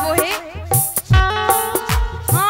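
Bundeli folk music accompaniment: dholak drum strokes, their bass notes sliding downward, under sustained harmonium notes, with a wavering melodic line near the start.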